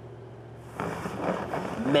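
A quiet, steady low hum, then about three-quarters of a second in a diffuse studio-audience reaction rises and carries on. A man's voice starts in near the end.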